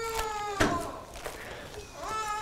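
A high-pitched, drawn-out cry with slowly falling pitch that fades about half a second in, and another starting near the end, with a soft rustle of Bible pages in between.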